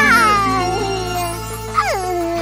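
A high, wordless cartoon voice holds a long coo that slowly falls in pitch, then swoops down again near the end. Background music with a steady low bass note plays underneath.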